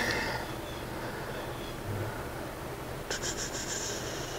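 A sheet of notepaper being handled, with a papery rustle about three seconds in that lasts a little over a second, over the steady low hum of an electric fan.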